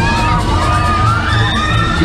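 Riders on a spinning flipper ride screaming: several long, high screams overlapping, over loud fairground music with a steady bass beat.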